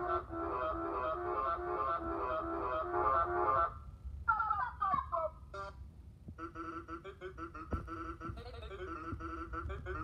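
Browser music sequencer playing a fast looped tune built from pitched goose-honk samples and other sound effects, through the computer's speakers. The loop breaks off just under 4 s in, a few quick falling notes follow, and the fast repeating pattern starts again after about 6 s.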